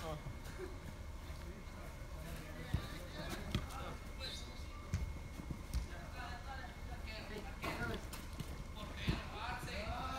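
Soccer ball being kicked and players running on artificial turf: a handful of sharp thuds at uneven intervals, over a low steady rumble.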